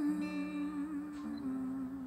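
A woman's voice holding one long, slightly wavering hummed note over the softly ringing strings of an acoustic guitar chord.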